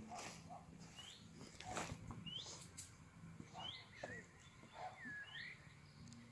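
A bird calling faintly outdoors: a short chirp that sweeps up in pitch, repeated about once a second, with a few soft clicks among the calls.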